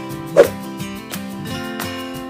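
A short music jingle of steady chords, broken by a loud, short burst about half a second in.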